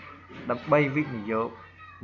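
A man's voice speaking, with short gliding syllables and no other sound.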